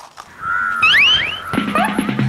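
A high whistle-like tone that swoops upward a few times, like a comic sound effect, then background music with a fast steady beat starting about halfway through.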